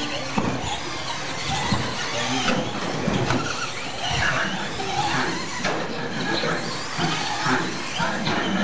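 Radio-controlled short course trucks racing on a dirt track, their motors whining as the pitch shifts up and down, with a few short knocks as trucks land or strike the track edges.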